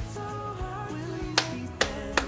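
Background music with a steady tune; near the end, two sharp hand claps about half a second apart.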